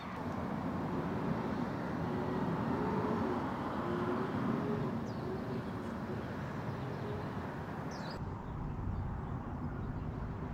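Steady outdoor background noise, like a residential street with distant traffic, with a sudden change in the hiss about eight seconds in where the footage is cut.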